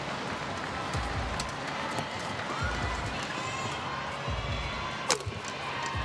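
Badminton rally heard in an arena: sharp racket strikes on the shuttlecock over a steady crowd murmur, with the loudest hit about five seconds in.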